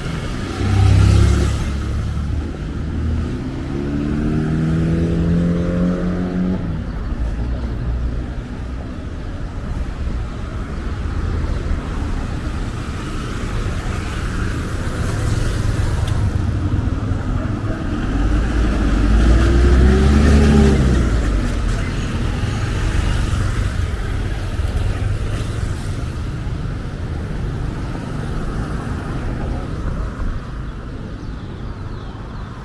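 Town-centre street traffic: motor vehicles passing close by over a steady traffic hum. A few seconds in one engine rises steadily in pitch as it accelerates away, and about two-thirds of the way through a louder vehicle passes, its engine note rising then falling.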